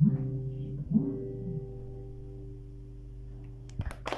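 Two acoustic guitars strummed in a chord at the start and again about a second in, then left to ring and fade slowly as the song's closing chord. A couple of sharp clicks come just before the end.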